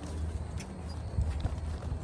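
Hoofbeats of an Arabian horse moving around on a lunge line over soft arena dirt, heard as dull low thuds with a few faint clicks.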